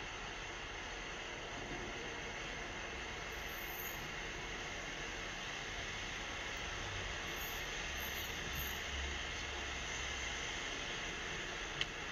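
Steady city street background noise, mostly the even hum of traffic, with a low rumble that swells a couple of times and a single sharp click near the end.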